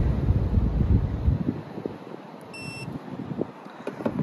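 A short, high electronic beep from a handheld laser tyre-tread gauge about two and a half seconds in, as it takes a tread-depth reading. A low rumble of background noise fills the first second or so.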